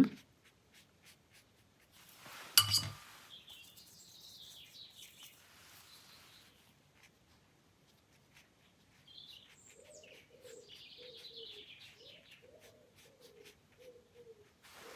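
Faint birdsong with higher chirps, and in the second half a run of low, repeated cooing notes typical of a dove. A short sharp sound about two and a half seconds in is the loudest thing.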